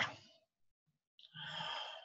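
A person's audible sigh or breath into a computer microphone, lasting a little over half a second near the end, after a short stretch of silence.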